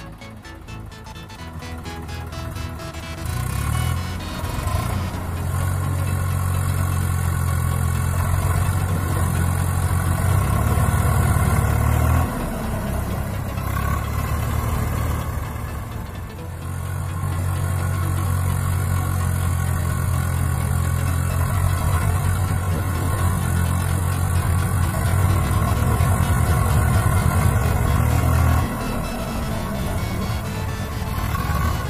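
Background music over a Swaraj 744 FE tractor's three-cylinder diesel engine working hard. A loud low sound holds steady for several seconds at a time and cuts off abruptly twice, about halfway through and near the end.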